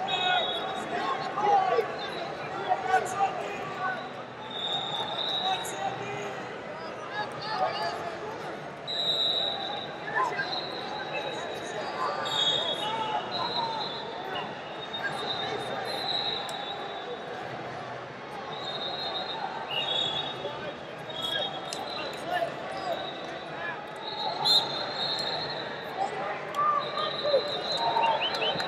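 Busy wrestling-arena din: many voices and shouts echoing in a large hall, with frequent short, high referee-whistle blasts from the mats and occasional thumps.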